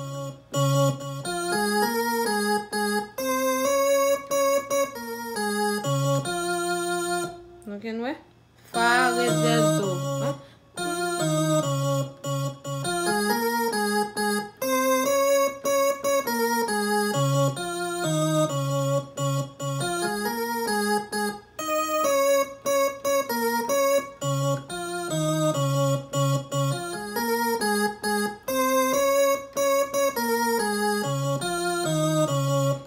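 Electronic keyboard sound played from an Akai MPK261 MIDI controller: chords and a right-hand melody line, note after note with only brief gaps. About eight seconds in, the pitch swoops down and back up.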